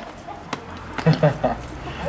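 A few short, quiet voice sounds from people, with a low outdoor background rumble.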